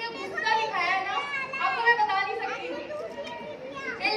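Speech: women's voices talking, with chatter around them.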